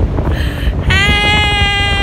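Wind buffeting the microphone throughout. About a second in, a woman lets out a long, steady, high-pitched held cry.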